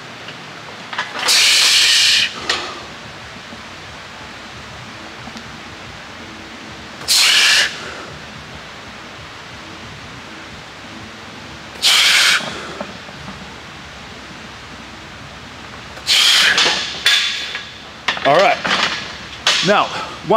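A powerlifter's forceful bracing breaths during a heavy barbell back squat set: loud hissing breaths about five seconds apart, one between each rep, the first the loudest, then a quick run of harder breaths near the end followed by voiced gasps.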